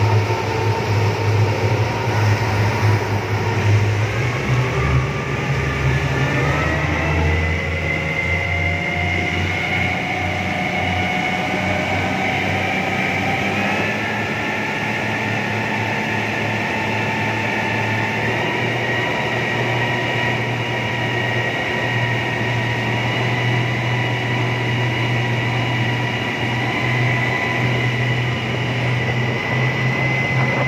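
Twin outboard motors driving a speedboat at speed, a steady engine drone whose pitch climbs for several seconds a little way in, then holds steady. The churning wake rushes underneath.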